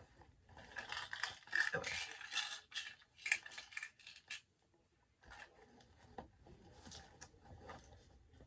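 Small items and packaging being handled and shuffled in a purse: a dense run of rustling and light clicks in the first half, a short pause, then softer rustling.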